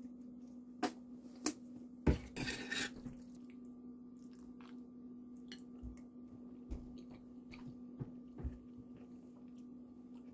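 Plastic squeeze bottle of French's yellow mustard being squeezed over a bowl of food: two sharp clicks about a second in, then a short sputtering squirt. After that come faint spoon clinks and quiet eating sounds over a steady low hum.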